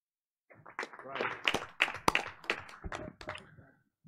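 Scattered handclaps from a few people, starting about half a second in and dying away just before the end.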